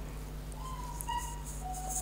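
Room tone with a steady low hum, and two faint, drawn-out whistle-like tones, one higher and then one lower.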